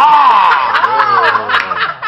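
Loud male laughter, one laughing voice on top rising and falling in pitch with others under it, running without a break.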